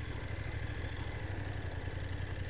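BMW GS motorcycle's parallel-twin engine running steadily at low revs, close to idle, as the bike is turned round slowly.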